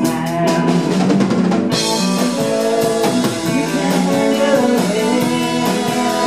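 Live rock band playing: electric guitars, bass guitar and drum kit. Steady hi-hat strokes change about two seconds in to a crash and a ringing cymbal wash, with the guitars and bass carrying on underneath.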